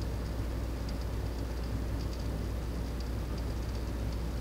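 Steady low hum with a few faint soft ticks as a small plastic spoon spreads clay mask onto the face.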